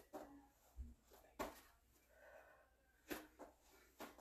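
Mostly quiet, broken by about four short, sharp breaths of a woman straining through plank-ups on a mat, the loudest about a second and a half in.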